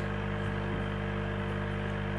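Aquarium pump running with a steady, even low hum.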